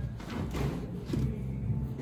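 Live band music from a jam session in the studio downstairs, heard muffled through the building's floor: mostly bass notes and drum thuds.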